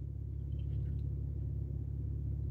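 A steady low hum in a pause between speech.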